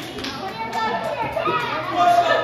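Voices of children and adults talking and calling out at once in a large room, several of them high-pitched children's voices.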